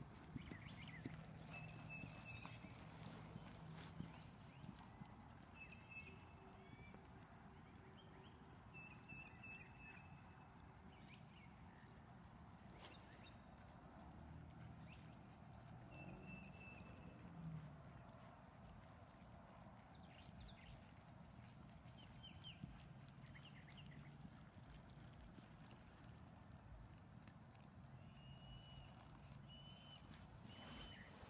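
Faint hoofbeats of a horse trotting on a soft dirt arena, barely above near silence, with a few short high chirps now and then.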